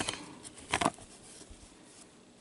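Trading cards being handled in gloved hands: a soft rustle that fades, then one brief louder rustle a little under a second in.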